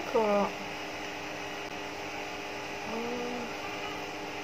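A brief voiced sound from a person right at the start and a fainter one about three seconds in, over a steady low hum.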